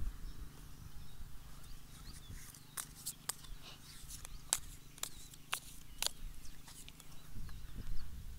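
Open-air ambience in a grassy field: a steady low rumble with a series of sharp, irregular clicks through the middle.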